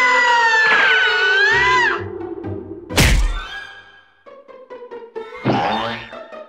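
Cartoon sound effects with music: a wavering, gliding whistle-like tone for about two seconds, then one loud thunk about three seconds in as the cartoon dog springs off the diving board. Short plucked notes follow, with a quick rising whoosh near the end.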